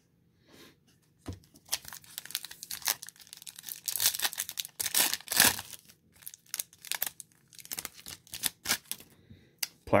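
A foil trading-card pack being torn open and its wrapper crinkled: a run of irregular rips and crackles over several seconds, loudest about halfway through.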